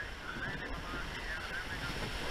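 Wind buffeting the microphone over water rushing and washing around a surfboat's hull in broken surf, with faint voices in the distance.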